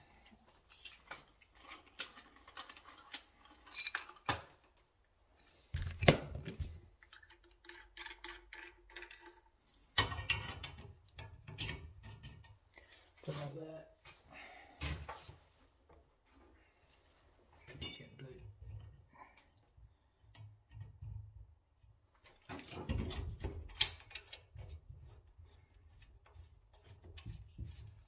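A brass-unioned circulating pump and its metal fittings being handled, giving irregular metal clinks, knocks and rattles, with a few louder knocks.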